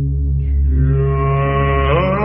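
A deep, sustained chanting voice holding one low note in a mantra-like drone, its vowel shifting near the end.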